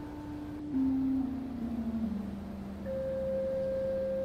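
Pipe organ playing softly in slow, held single notes: a line stepping down in pitch, with a higher note joining and held near the end.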